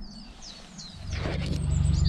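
A small bird chirping in a quick run of short, high, falling notes. About a second in, a loud low rumble comes in and carries on.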